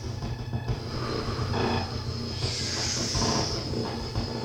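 Amplified, close-up human breathing over a steady low electronic throbbing drone, with a long, loud hissing breath from about two and a half seconds in.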